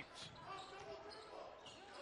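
Faint court sound of a basketball game: a ball being dribbled on the hardwood floor under the low general noise of the arena.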